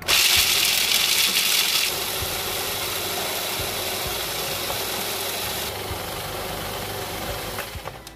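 Electric food processor running, its blade grinding dry ingredients into a fine powder in the plastic bowl. It starts abruptly and is harshest for the first two seconds, then runs steady until it stops near the end.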